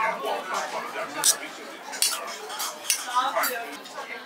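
Metal spoon scraping and clinking against a stainless steel bowl as rice and greens are mixed, with a handful of sharp clinks. Voices chatter in the background.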